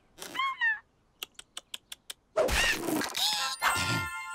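Cartoon sound effects: a short gliding squeak, then a quick run of about seven ticks, then a loud rushing burst laced with squealing tones that glide down near the end.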